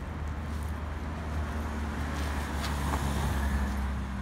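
Steady low rumble of road traffic, a little louder in the second half.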